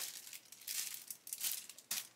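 Clear plastic kit bag crinkling and rustling irregularly as a sprue of grey plastic model parts is lifted and handled inside it, with a sharper crackle near the end.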